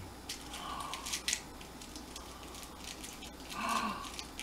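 A few faint, sharp clicks and light handling noises as fingers work at a small shell trinket, trying to pry it open. A short, low voice-like hum comes near the end.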